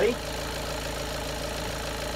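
Volkswagen TDI diesel engine idling steadily, with the headlights and fan switched on as an electrical load while its alternator charges normally.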